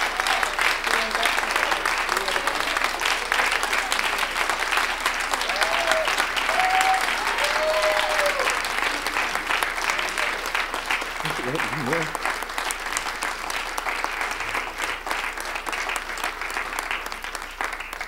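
Audience applauding steadily, with a few voices calling out over the clapping in the first half.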